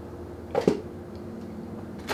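Hardcover books handled on a table, with one short bump about half a second in, over a steady low hum.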